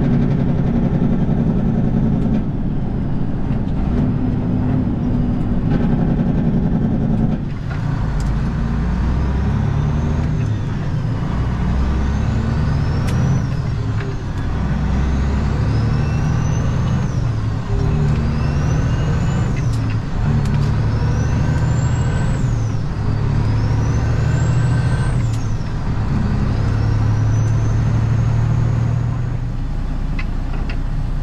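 Semi truck's diesel engine heard from inside the cab, pulling away and accelerating through the gears of its manual transmission. A high whine rises with the revs and drops back sharply at each upshift, about every three seconds over the second half.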